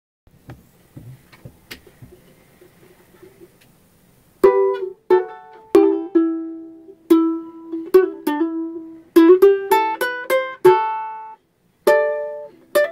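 A few faint clicks and knocks, then from about four seconds in a Kiwaya ukulele plucked note by note. It picks out the slow single-line melody of the song's flute intro, with a quick run of ornamental notes about nine seconds in.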